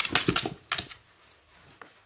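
A cloth towel rustling and scraping as a newborn miniature pinscher puppy is rubbed with it by hand: a quick run of sharp rustles and clicks, mostly in the first second.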